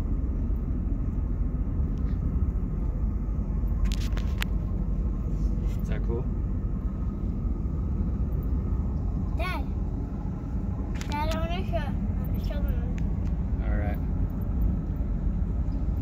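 Steady low rumble of wind and road noise in the open cabin of a 1967 Lincoln Continental convertible driving with the top down. A few sharp clicks come about four seconds in.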